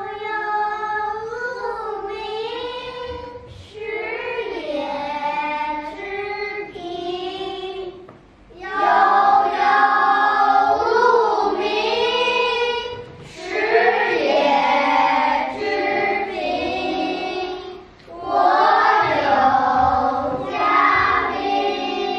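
A group of young children singing a classical Chinese poem in unison, phrase by phrase with short breaks between. It gets louder from about nine seconds in.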